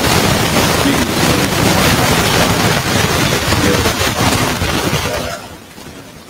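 Loud, steady rushing noise like static or wind on a microphone, spread evenly from low to high pitch, with a voice faintly buried beneath it. It drops away about five seconds in.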